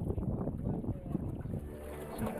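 Wind buffeting the microphone in uneven gusts aboard a small sailing dinghy under way.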